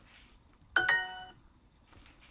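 Duolingo app's correct-answer chime: a short bright ding a little under a second in, fading within about half a second, signalling that the answer was accepted.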